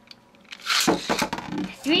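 Quiet for about half a second, then a Beyblade (Shinobi Salamander) is launched into a clear plastic stadium with a sudden rush, and the metal-wheeled top spins and clatters across the stadium floor.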